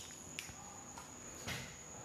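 Faint room tone in a pause in speech, with a steady high-pitched whine and two or three soft clicks.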